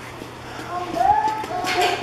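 Indistinct voices of people talking, getting louder over the second half.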